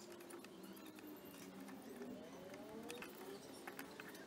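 Very quiet: scattered faint light clicks of small steel nuts, bolts and a bracket being handled and tightened by hand, with a few faint rising whistle-like tones near the middle.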